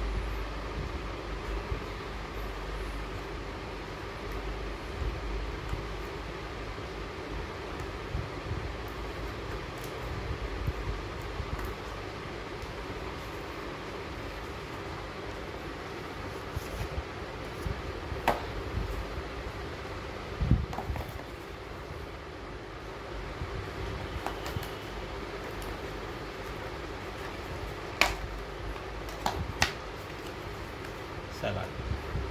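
Steady hum of an electric fan running in a small room, with a few sharp clicks and handling noises from scissors and cardboard food boxes being opened.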